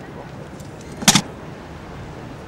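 A single sharp, doubled knock from the honour guard's drill on the stone paving, about a second in, over a steady outdoor background of a watching crowd.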